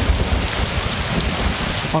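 Heavy tropical typhoon rain pouring down in a dense, steady hiss, with a low rumble underneath.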